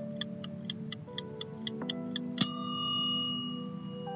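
Countdown timer sound effect ticking about four times a second over soft sustained background music. About two and a half seconds in, the ticking stops and a bright chime rings out and fades slowly, marking time up.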